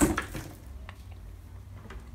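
Bypass pruning shears snipping through a dwarf jade's soft succulent branch: one sharp snip at the very start, then a few faint ticks as the cut sprig falls away.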